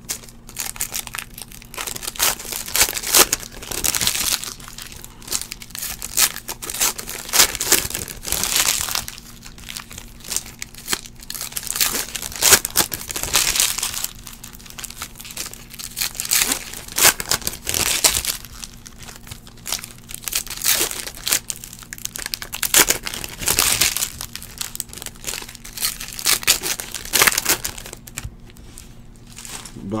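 Foil wrappers of 2015-16 Panini Prizm basketball card packs crinkling and tearing as the packs are ripped open and the cards pulled out, in repeated irregular bursts.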